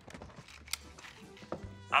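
Faint electronic buzzing with a single short click about three quarters of a second in, under soft background music.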